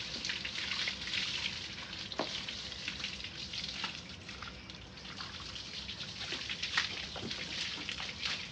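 Water from a hose spraying onto a cow's wet hide and splashing to the ground, a steady spatter with a few brief louder splashes.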